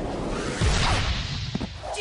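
Cartoon sound effect for a powerful special shot of the ball: a loud whoosh with a deep rumble underneath, swelling about half a second in and then fading away.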